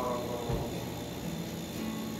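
A man singing a hymn: a held note ends at the start, then a pause between phrases with only faint low steady tones and a soft thump about half a second in.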